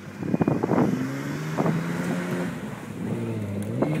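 Toyota Land Cruiser's engine revving as the SUV spins donuts on loose dirt. The engine note holds, dips about three seconds in, then climbs again.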